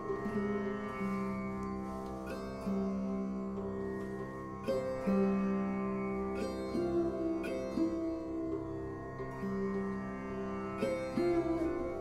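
Sarode playing a slow melody of single plucked notes that slide between pitches, over a steady drone.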